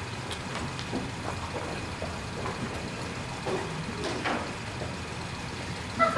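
Room tone: a steady low hum with faint scattered ticks and shuffles from people moving about.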